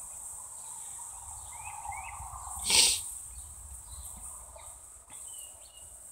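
Quiet outdoor background with a few faint bird chirps, and one short sharp puff of noise about three seconds in.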